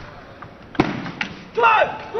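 A single sharp knock of a table tennis ball about a second in, then a short, loud, high-pitched shout from a player near the end.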